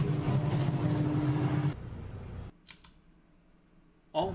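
Loud rushing noise with a steady electrical hum from an arc fault in an outdoor switchgear cabinet as it pours smoke. The noise cuts off abruptly under two seconds in, leaving a low murmur, then near quiet with one faint click.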